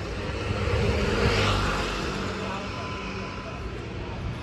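Street traffic: a motor vehicle's engine running close by, swelling about a second in and then easing off under a steady low hum.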